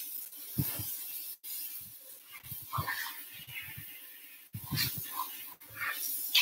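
A pet dog stirring close to the microphone, making small noises among irregular soft knocks and rustles over a faint steady hiss.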